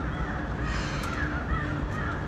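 Birds calling in the background: several short, wavering calls over a steady low rumble.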